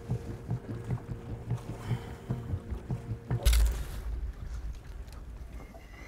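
Choppy water slapping against a small boat's hull in a quick, regular rhythm over a faint steady hum. About halfway through comes one loud knock with a deep rumble of wind and handling on the microphone, which then settles to a steadier rumble.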